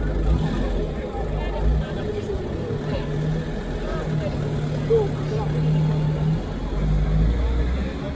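Minibus engine running close by, its low rumble swelling again near the end as the van pulls away, with people's voices around it.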